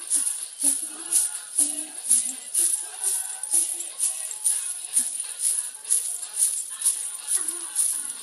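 Metal coins on a belly-dance hip scarf jingling in an even rhythm, about twice a second, as a small child shakes her hips, over music playing.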